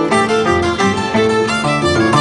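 A violin and an Andean harp playing a toril tune together: a bowed fiddle melody over a quick run of plucked harp notes.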